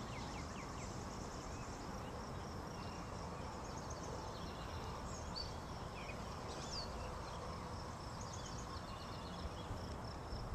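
Outdoor ambience: a steady, fairly quiet background noise with faint bird chirps and insect trills scattered through it.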